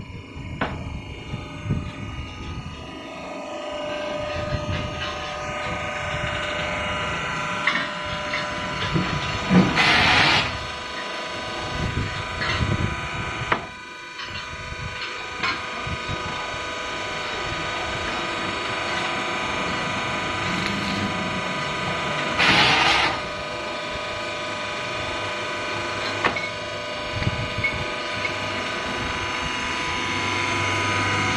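Hydraulic concrete block-making machine with automatic pallet feeder running: a steady machine whine of several tones that comes up over the first few seconds, with scattered knocks and two loud hissing rushes about 13 seconds apart.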